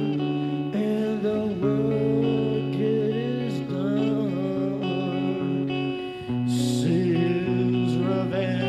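Live band playing a slow rock ballad: sustained electric guitar chords with a man singing, and a brief hiss about six and a half seconds in.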